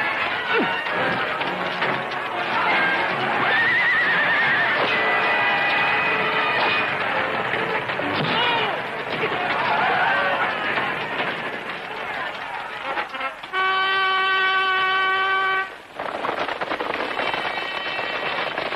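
Battle-scene film soundtrack: dramatic music over horses neighing and galloping. A little before the end a single horn-like note is held for about two seconds.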